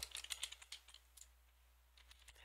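Faint typing on a computer keyboard: a quick run of about six soft key clicks that stops less than a second in.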